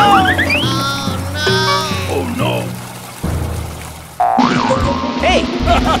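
Cartoon comedy sound effects over background music: sliding, boing-like tones and squeaky character voice noises. The music drops away and a new, louder cue comes in about four seconds in.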